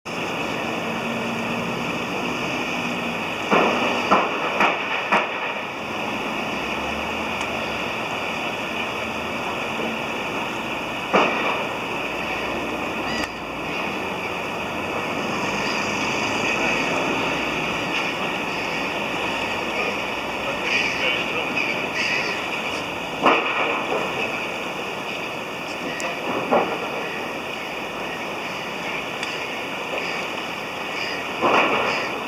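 Steady rush of water from a river's falls, with a few sharp knocks: a small cluster about four seconds in and single ones later.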